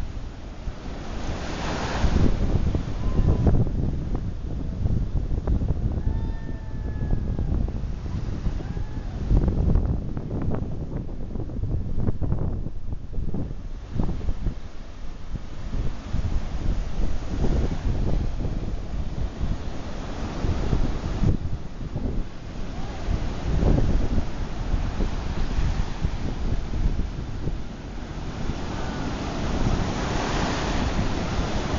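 Sea surf breaking and washing up the beach in uneven surges, with wind buffeting the microphone.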